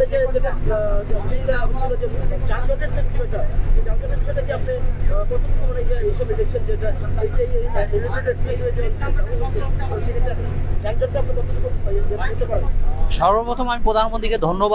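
Steady low drone of a moving shuttle bus heard from inside the cabin, under continuous talk; a voice grows louder near the end.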